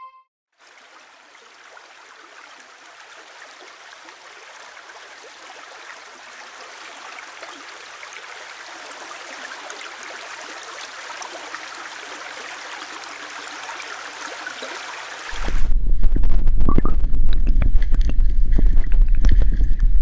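Flowing river water: a steady rush that slowly grows louder. About fifteen seconds in it switches suddenly to loud churning, splashing water with a deep rumble and buffeting, heard through a camera held half-submerged at the waterline.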